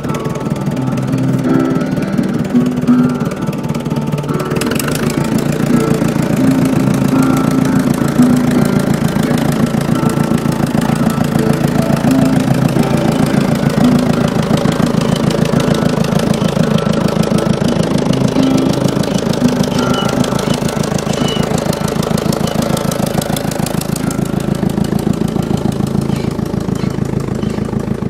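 Music with short held notes, laid over a tractor engine running steadily; the engine's rapid even pulsing comes in about five seconds in and eases off a few seconds before the end.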